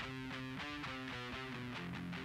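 Electric guitar sample at low volume: a Gibson Les Paul Classic through an Orange Terror Stamp amp head, with a Diezel VH4-2 high-gain pedal and a phaser in the effects loop, playing a quick run of picked notes. The amp is still stock, before the internal tube-gain modification.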